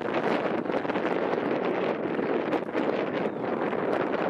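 Radio scanner static: a steady, flickering rushing hiss between transmissions, with no engine tone in it.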